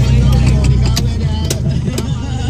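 Steady low rumble of a car cabin with music playing and some faint voices, and a few sharp clicks about a second in.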